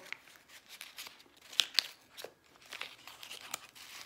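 Foil-lined tea-bag packet being crinkled and torn open by hand: a run of short crackles, the two sharpest coming close together a little before halfway.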